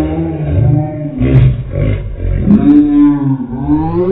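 Men yelling and roaring loudly without words, in long held cries; near the end a cry rises in pitch.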